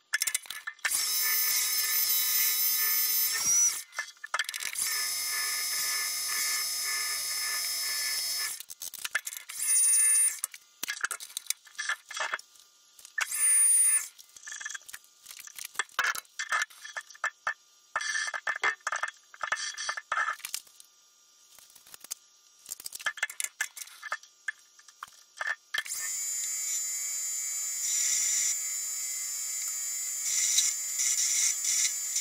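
Metal lathe spindle running with a steady high whine, twice for several seconds. In the middle the machine stops, leaving scattered clicks and knocks, and it runs again near the end.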